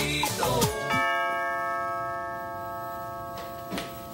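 Salsa music stops, and about a second in a doorbell chime rings once, its tone fading slowly over the next few seconds.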